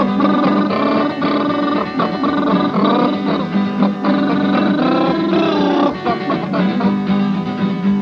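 Live acoustic guitar strumming a folk song, with wordless vocal sounds bending in pitch over it.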